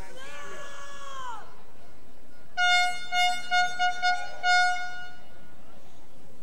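Car horns honking: a pitched blare that slides down in pitch in the first second and a half, then a series of horn toots of one steady pitch, several short ones and a longer last one, ending about five seconds in.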